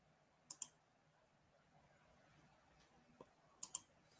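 Computer mouse clicking: a quick pair of clicks about half a second in, a faint tick a little after three seconds, and another quick pair near the end.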